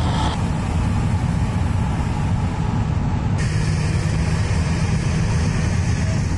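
Steady road and engine noise inside a moving car at highway speed, mostly a low rumble. The higher hiss drops away about a third of a second in and comes back abruptly about three and a half seconds in.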